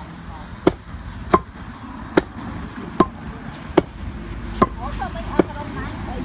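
Long wooden pestle pounding young green rice in a wooden mortar to make ambok (flattened rice). The strokes come steadily, a little more than one a second, each a sharp knock with a short ring.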